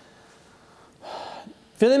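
A man's audible intake of breath close to the microphone, about a second in, with his speech starting again near the end.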